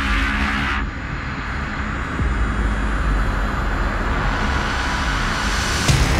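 Sound design for an animated logo intro: a loud, steady whooshing noise over deep bass, with a faint tone rising slowly through it.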